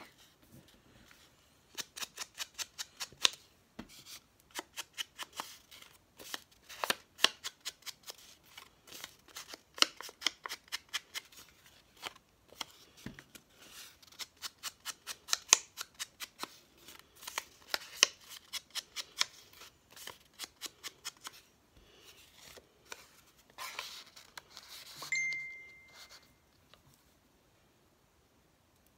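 Scissors snipping through paper in quick runs of sharp clicks, with short pauses between the runs. Near the end comes a brief swishing rustle of paper.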